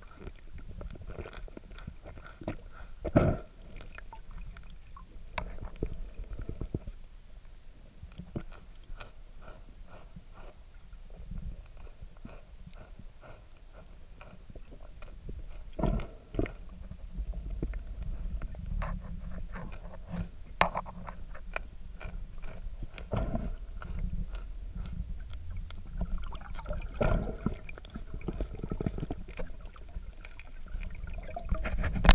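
Underwater sound close to a West Indian manatee grazing on the bottom. A low rumble runs throughout, with irregular crunching clicks from its feeding and a few louder knocks and gurgles.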